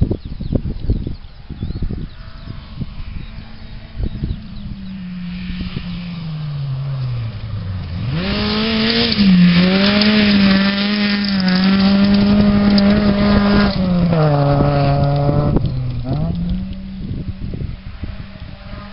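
Rally car engine on a gravel stage. It is heard at a distance at first, its pitch sinking as it slows for the approach. About eight seconds in it passes close, loud and high-revving, then drops in pitch twice as the driver lifts and shifts, and picks up again as the car pulls away. Wind buffets the microphone in the first couple of seconds.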